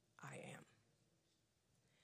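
A woman's voice saying "I am?" softly, almost in a whisper, then near silence.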